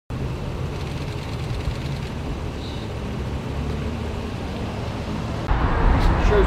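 Steady low rumble of street traffic. It gets louder and fuller about five and a half seconds in.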